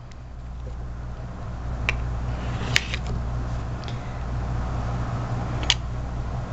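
Steady low hum, with three sharp clicks about two, three and nearly six seconds in, as a nail-stamping stamper and scraper knock against the metal image plate.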